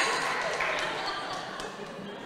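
A live audience's laughter and applause dying away, fading steadily.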